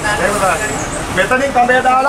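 Men's voices shouting and calling out in two spells, the second louder, over a steady low background rumble.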